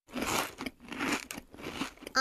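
Crunchy chewing sound effect for a cartoon koala munching a sprig of leaves, coming in three bursts of bites.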